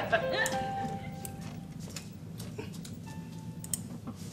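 Sparse background music: a few held notes early on and again near the end, with scattered light knocks.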